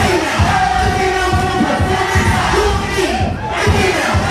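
Loud dance music with a heavy thumping beat, mixed with a crowd cheering and shouting.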